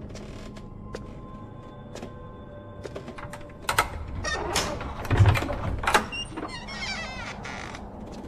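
A creaking sound with sharp knocks, loudest in a heavy thud a little after five seconds in, then wavering creaks near the end, over quiet sustained music.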